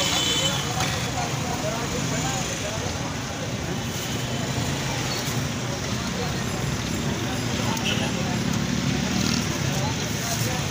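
Steady street traffic noise with indistinct voices in the background.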